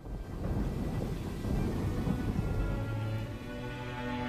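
Rumbling thunder and rain, with held musical notes rising through the noise from about three seconds in.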